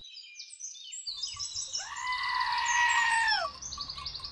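A sheep bleats once, a long wavering call of about two seconds near the middle, over birds chirping in quick high twitters throughout.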